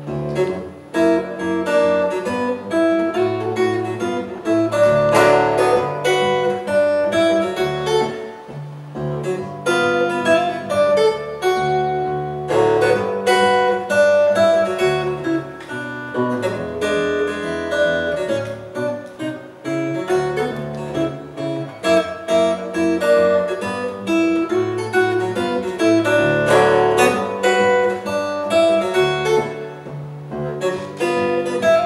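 Solo acoustic guitar played fingerstyle: a continuous run of plucked melody notes over changing bass notes.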